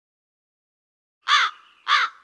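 Two short crow caws, about half a second apart, after a second of silence.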